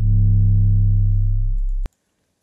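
A custom 808 bass sample playing back once: a sharp attack, then a deep, sustained bass tone that fades only slightly and stops abruptly near the end.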